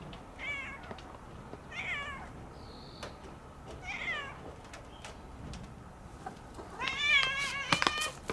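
Tabby-and-white domestic cat meowing four times: three short meows in the first half, then a longer, louder meow near the end.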